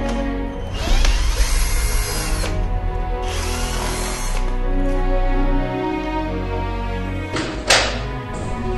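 Cordless drill-driver running in two bursts of a second or two each as it backs screws out of a door frame, the motor note rising at the start of each. Near the end comes one short, loud scrape or knock.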